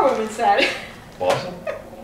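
A woman's voice making short, high exclamations that slide up and down in pitch, with laughter.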